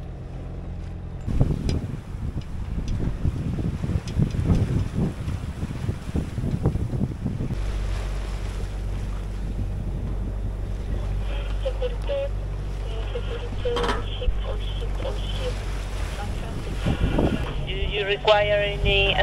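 Wind buffeting the microphone and sea water rushing past a sailing yacht. About halfway through, a steady low hum of the yacht's engine sets in under the wind, and faint voices come over the VHF radio near the end.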